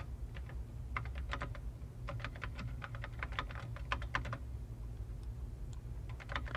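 Typing on a computer keyboard: quick runs of key clicks, with a pause about four and a half seconds in, over a steady low hum.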